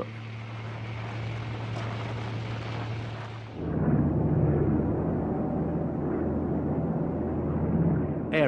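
A steady rumble with a low hum. About three and a half seconds in, it cuts to a louder, duller, steady drone of a propeller aircraft's engines in flight.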